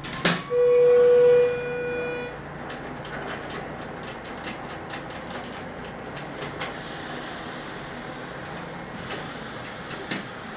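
Schindler hydraulic elevator's signal tone: a click, then one steady electronic beep held for about two seconds. After it comes a steady hum with scattered light clicks.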